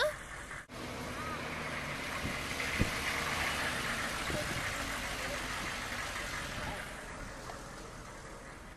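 Engine of a delivery step van running steadily close by, slowly fading over the last few seconds.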